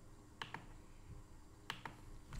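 Faint, sharp computer clicks in two quick pairs about a second apart, each pair a press and release, over a low steady hum.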